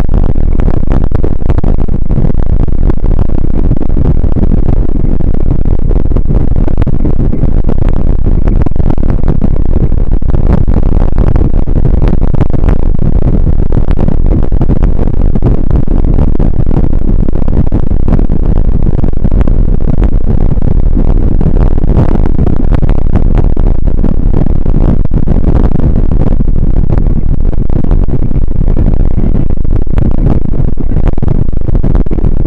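Loud, steady rumble and rustle of wind and jolting against the microphone of a body-carried camera while a bike runs along a rough, snowy forest trail.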